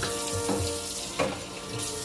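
Kitchen tap running into the sink during dishwashing, with a few sharp clinks of utensils against dishware.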